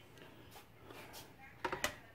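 Mostly quiet room tone, then a few light clicks and knocks about a second and a half in.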